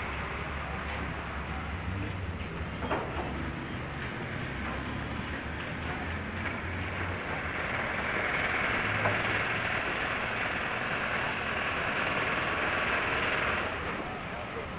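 Steady, noisy din from a steel-frame building site, heard through the hiss and low hum of an old optical film soundtrack. It grows louder about eight seconds in and drops off suddenly just before the end.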